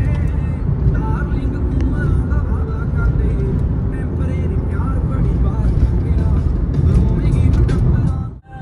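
Steady low road and engine rumble inside the cabin of a moving Honda City, with faint voices and music above it.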